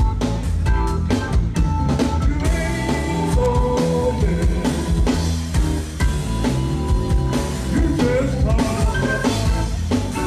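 Blues-rock band playing live, with a drum kit keeping a steady beat under bass, electric guitar and keyboards.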